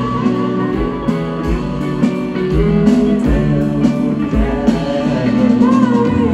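Live rock band playing through a PA, heard from the audience: electric guitars with bending lead lines over bass and a steady kick-drum beat.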